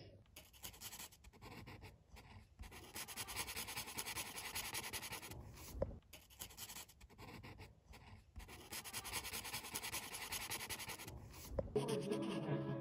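Felt-tip sketch marker scratching across coloring-book paper as an area is filled in blue, in two long runs of back-and-forth strokes with short pauses between. There is a single soft knock about six seconds in.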